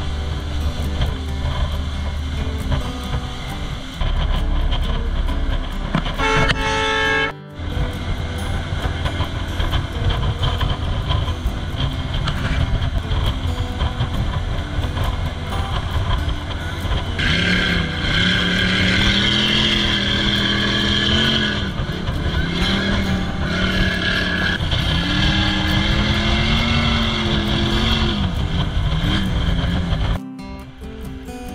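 A motorboat running under way, its engine sound mixed with wind and water noise. The sound breaks off briefly about seven seconds in. From about halfway the engine's pitch rises and falls repeatedly.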